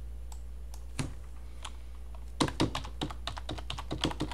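Computer keyboard typing: a few scattered clicks, then a quick run of keystrokes in the second half as a search word is typed, over a steady low hum.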